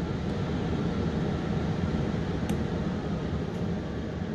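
Steady whoosh of a forced-air HVAC blower fan winding down after being switched from on back to auto. A single sharp click about halfway through.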